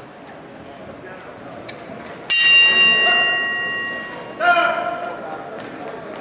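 Boxing ring bell struck once, ringing and fading over about two seconds: the signal that starts the round. About two seconds later a loud shout rises over the murmur of a crowd in a large hall.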